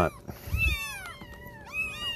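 A cat meowing in a quick run of short, arching calls, with a faint steady hum underneath.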